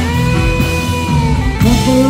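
Live rock band playing an instrumental passage: an electric guitar lead holds one long sustained note that bends down about a second and a half in, then slides up into a new note, over bass and drums.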